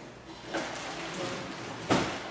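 Plastic toy wagon being pulled across a hard floor: a light knock about half a second in, a few small clicks, and a sharper thud near the end.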